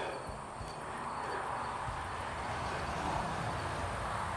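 Faint, steady outdoor background noise: a low, even rush with no distinct sound standing out.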